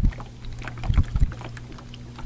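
Small boat on a lake: a steady low hum with scattered short knocks and splashes of water against the hull.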